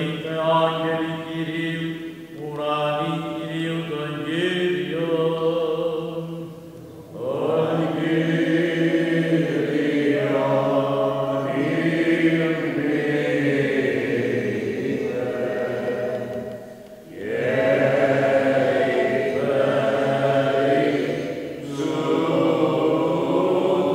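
A small group of male chanters singing Greek Orthodox Byzantine chant in a church, a melody moving over a steady low note held underneath. The singing pauses briefly twice, about a third of the way in and again near three-quarters through.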